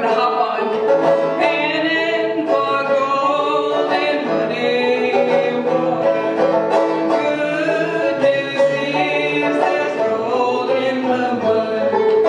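Clawhammer-style banjo played with a woman singing along.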